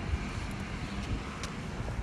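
Footsteps of boots walking on a concrete sidewalk, faint and soft, over a steady low outdoor rumble.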